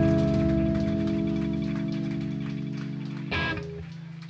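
Rock band's last chord ringing out at the end of a song: electric guitar and bass notes held and fading steadily. A brief noisy hit cuts in near the end.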